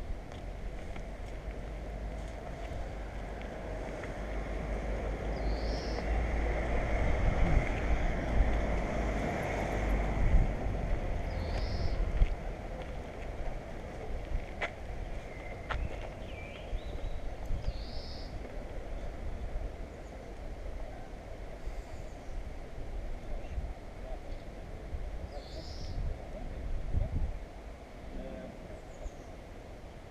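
Outdoor ambience. Wind rumbles on the microphone while a vehicle's noise swells and fades over the first twelve seconds or so. A bird gives a short high call about every six or seven seconds.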